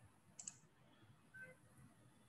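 Near silence: faint room tone, with one brief, faint click about half a second in.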